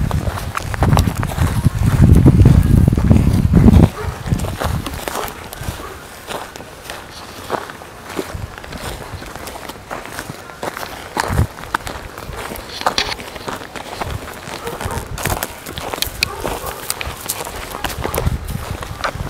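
Footsteps crunching irregularly through dry grass and brush as people walk over rough ground. A loud low rumble from about one to four seconds in covers the steps for a moment.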